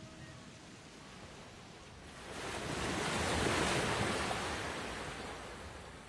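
Rushing surf: a single sea wave swells in from about two seconds in, peaks, then slowly washes away.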